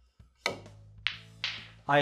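A snooker cue strikes the cue ball with a sharp click about half a second in. Two more sharp ball clicks follow, at about one and one and a half seconds, over low background music.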